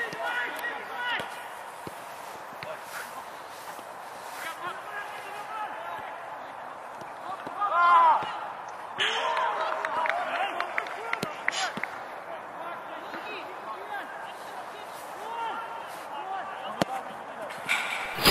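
A football being kicked and bouncing on an artificial-turf pitch, with sharp knocks clustered around the middle, amid distant voices and a loud shout about eight seconds in.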